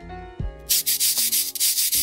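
Background outro music with steady notes and bass, overlaid from just under a second in by a scratchy rubbing sound effect that pulses several times a second and stops after about a second and a half, alongside a wipe transition.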